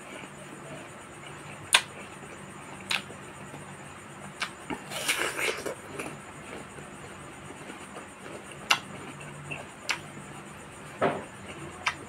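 Close-up eating sounds of a ripe mango being peeled by hand and eaten: scattered sharp, wet clicks and a denser crackly stretch about five seconds in, over a faint steady hum.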